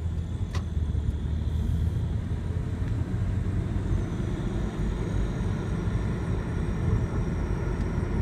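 Low, steady road rumble inside the cabin of a 2004 Lexus IS300 on the move, with a faint high-pitched squeal from the front right wheel well coming in about halfway through.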